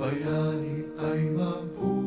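Music: a man singing a slow song, holding long notes that change pitch a few times.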